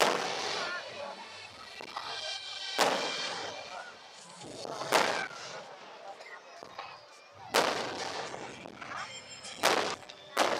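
Aerial firework shells bursting: five loud bangs roughly two to three seconds apart, each trailing off as it echoes.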